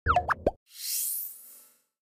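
Animated end-card sound effects: a quick cluster of short pitch-gliding chirps over a low thump in the first half-second, then a high shimmering sweep lasting about a second.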